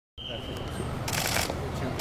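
Press camera shutters firing in quick bursts of rapid clicks, the loudest burst about a second in, over a low steady outdoor rumble.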